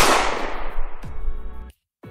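A single sharp, loud bang at the start, followed by a long fading ring, over background music with a steady beat. The sound cuts off abruptly shortly before the end.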